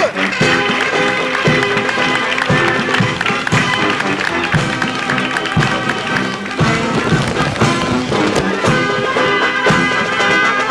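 Army marching band playing a march outdoors, brass over a steady drum beat.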